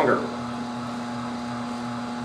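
Omega TWN30 twin-gear cold press juicer running with a steady, even motor hum.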